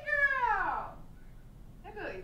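A puppy's long whining cry, falling in pitch and fading out after about a second. A voice starts near the end.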